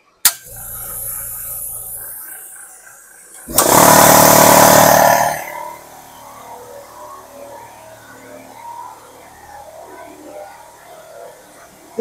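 A switch clicks and a small California Air Tools air compressor starts, its motor running with a steady hum. About three and a half seconds in, a much louder, harsher compressor noise comes in for about two seconds, then drops back to a quieter steady hum.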